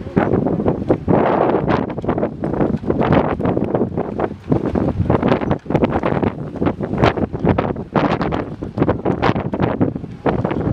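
Wind buffeting the microphone: a loud, irregular rumble that surges and drops in uneven gusts.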